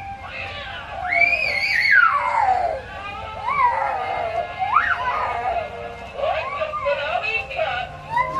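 Battery-powered animated Halloween figure talking in a high, sing-song voice that swoops widely up and down in pitch, with music-like phrasing.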